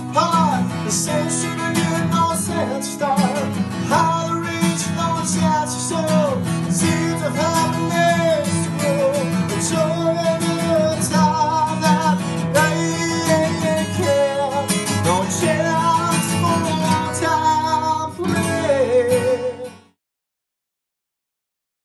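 Unplugged live song: acoustic guitar strummed steadily with a sung melody over it, without clear words. The music cuts off near the end.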